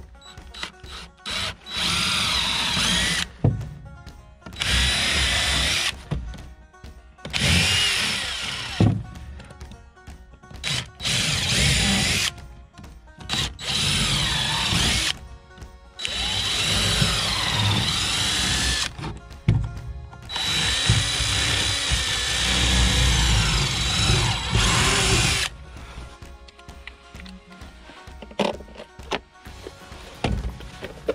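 DeWalt cordless drill boring pilot holes into wooden boards. It runs in about seven bursts of one to five seconds each with a whining motor pitch, and the longest run comes in the second half.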